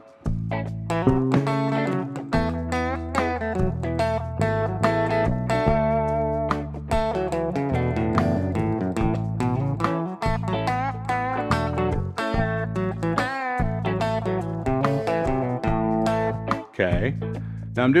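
Telecaster-style electric guitar playing an improvised A major pentatonic lick, bouncing between the root and the octave with a few bent notes and a couple of chromatic passing notes, over sustained low notes.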